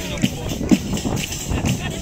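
Tammurriata folk music: a tammorra frame drum with jingles beating a steady rhythm of about two strokes a second, with a voice singing over it.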